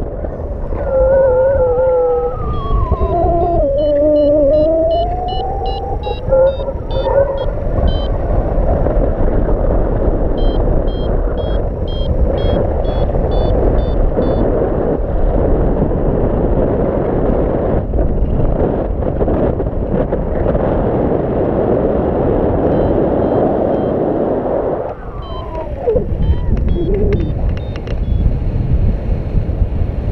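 Wind rushing over the microphone of a paraglider in flight, a loud, steady buffeting. Over it come two runs of quick high beeps from a paragliding variometer, the climb tone that signals rising air: the first early on, the second around the middle. A wavering, gliding tone rises and falls near the start and briefly again later.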